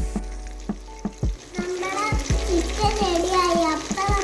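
Chicken frying in oil in a pressure cooker, a steady sizzle under background music with a regular beat; a melody comes in about one and a half seconds in.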